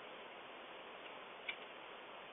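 Faint steady hiss with one sharp click about one and a half seconds in, a computer mouse click.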